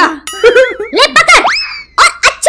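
Cartoon sound effects from an animated comedy: a short run of steady ringing tones, then a springy effect whose pitch swoops up and slides slowly back down.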